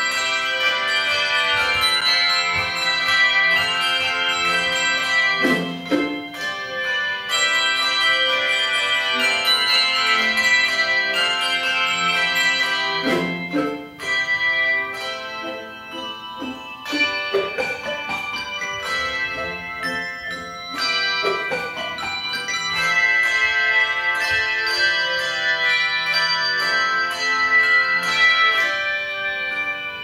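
Handbell choir music: many bells struck together in chords, the notes ringing on and overlapping, with a softer passage in the middle.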